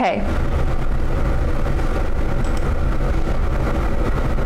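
Steady low background rumble in a small room, with faint indistinct voices.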